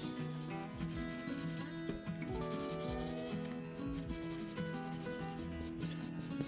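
A purple nail buffer block rubbed rapidly back and forth across the surface of an artificial nail tip, a quick repeated scuffing, smoothing the nail before gel polish, with soft background music underneath.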